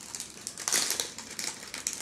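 Crinkling and rustling of a fabric cat play tunnel, with louder crackles about two-thirds of a second in and again near the end.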